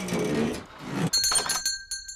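Cartoon shop doorbell ringing once as the door opens, a high ringing tone that lasts just under a second. It follows a few light clicks and a low hum that fades out in the first second.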